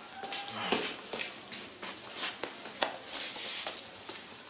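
A run of light, irregular clicks and knocks with short rustles in a quiet room.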